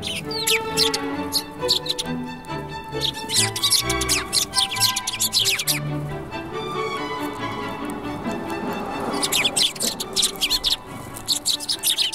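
Eurasian tree sparrows chirping in clusters of quick, high, falling notes over steady background music. The chirping comes in bursts near the start, in the middle, and again from about nine seconds in.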